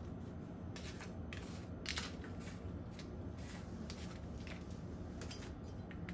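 Faint, scattered scratchy ticks and rattles of a plastic spice shaker being opened and shaken over raw meat, over a steady low room hum.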